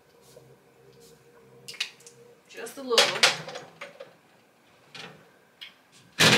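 Perfume atomizer spraying: two short, loud hissy sprays about three seconds in, with light clicks of the bottle being handled before them and a small clink near the end.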